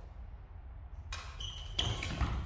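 Badminton rackets hitting the shuttlecock and players' feet moving on the court floor during a doubles rally: quiet at first, then a few sharp hits in the second half.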